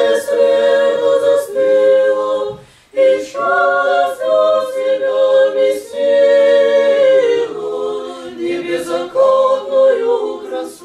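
Small mixed vocal ensemble of men and women singing Orthodox church music a cappella in harmony. The phrases are long and held, with a short break for breath about three seconds in.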